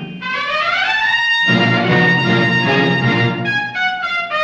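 Orchestral music with prominent brass: a phrase rising in pitch opens, full sustained chords follow, and short separate notes come near the end.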